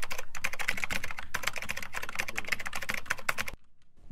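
Fast typing on a computer keyboard: a quick, steady run of key clicks that stops about three and a half seconds in.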